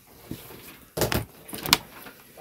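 Pages of a Bible being leafed through on a desk: a few short rustles and soft knocks, the loudest about a second in.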